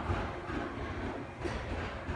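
Electric train at a station platform: a steady low rumble with faint clacks of wheels on rail.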